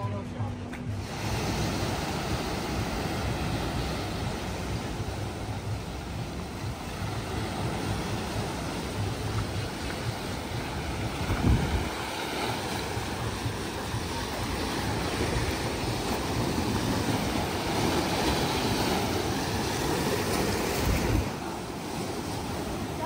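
Rough sea: waves surging and breaking, with wind buffeting the microphone. One wave breaks louder about halfway through and another just before the end.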